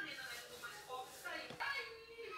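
Faint, indistinct speech: a person's voice talking quietly, with no words that can be made out.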